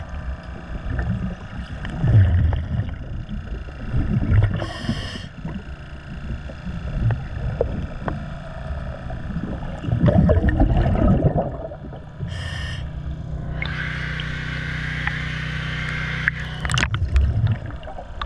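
A diver breathing underwater through a scuba regulator: short hissing inhalations, about 5 s and 12.5 s in, and rumbling gurgles of exhaled bubbles. Near the end a steadier hiss runs for a few seconds.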